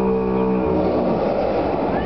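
Arena sound system playing the show's soundtrack: a low sustained drone that gives way, about half a second in, to a loud noisy rush.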